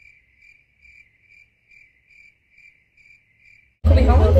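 Cricket chirping sound effect laid over a muted stretch: short, evenly spaced chirps about twice a second with nothing else behind them, the stock gag for an awkward silence.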